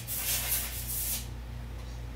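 Rustling, rubbing handling noise for about the first second while the embroidery hoop is taken off the embroidery machine, then a low steady hum from the machine.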